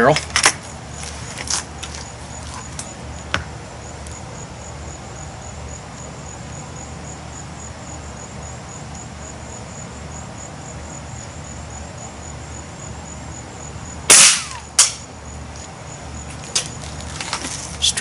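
A Beeman Silver Kodiak spring-piston air rifle with a .177 barrel fires once about 14 seconds in, a sharp crack followed under a second later by a second sharp report. A few light clicks come in the first few seconds, before the aim.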